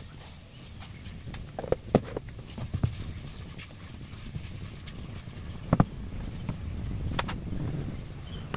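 Kitchen handling sounds: a metal spoon clinking and scraping in a cooking pot and a plastic salt container being handled and put down on the counter, as scattered sharp knocks, the loudest a little before six seconds in.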